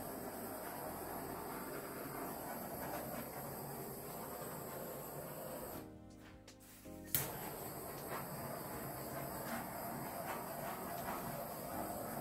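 Background music over a steady hiss from a small handheld gas torch passed over wet acrylic paint to pop air bubbles. The sound drops away briefly about halfway through.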